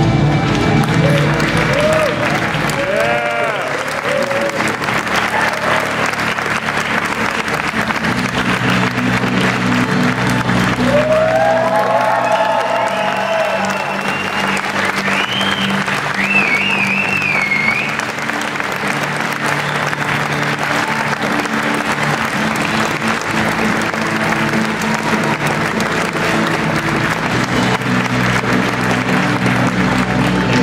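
A large audience applauding and cheering over loud music, with whoops rising out of the crowd a few seconds in and again around the middle, and a wavering whistle soon after.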